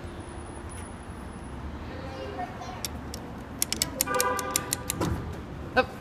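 Otis Series 1 hydraulic elevator arriving at the landing over a steady low rumble: about four seconds in, a short steady tone lasting under a second comes with a run of sharp clicks, then a low thump.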